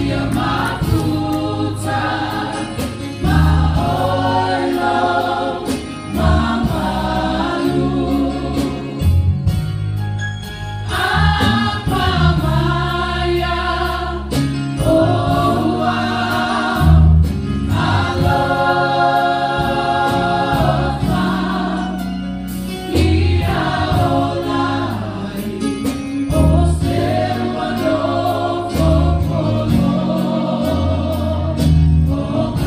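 A mixed church choir of women, men and children singing a gospel song in Samoan, phrase by phrase, over keyboard accompaniment with sustained bass notes.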